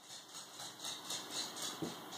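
A dog gnawing on a chew treat held between its paws: quick, crisp crunching and clicking of teeth on the chew, about six bites a second.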